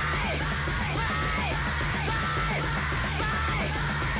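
Loud Japanese noise-punk recording by an all-female trio: distorted guitar, bass and drums forming a dense, steady wall of sound, with a shouted female vocal over it.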